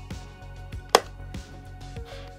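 A single sharp plastic click about a second in, as the hinged cockpit canopy of a Hasbro A-Wing toy snaps shut, over soft background music.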